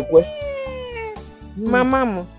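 A woman's drawn-out falling vocal exclamation for about a second, then a shorter rising-and-falling call near the end, part of a mocking chant, over background music.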